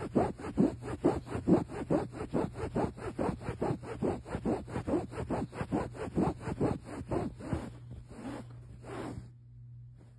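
Microfibre cloth scrubbing woven upholstery fabric in quick back-and-forth strokes, about three a second, that fade and stop about nine seconds in. A low steady hum runs underneath.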